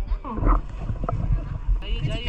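People's voices on a river raft: a short drawn-out vocal call early on, then a louder voice starting near the end, over a steady low rumble.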